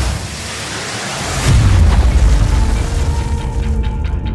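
Cinematic trailer sound design: a sudden hit, then a noisy swell that lands on a deep boom about a second and a half in, leaving a low rumble under sustained music.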